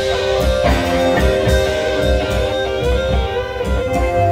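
Live band playing an instrumental passage, with electric guitar to the fore over bass and drums.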